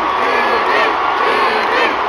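A large stadium concert crowd cheering, with many voices yelling at once and no music under it.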